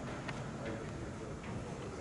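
Background noise of a large indoor hall with faint, distant voices and a few faint sharp ticks or taps.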